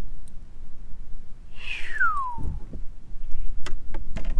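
A single whistled note, gliding smoothly down in pitch over just under a second about halfway through, followed by a brief low rumble.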